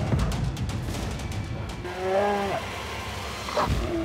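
A grizzly bear growling over background music, with one drawn-out, pitched call about halfway through and a deep low rumble near the end.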